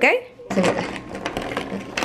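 Clear plastic bag crinkling, with felt-tip markers clicking against one another as they are handled.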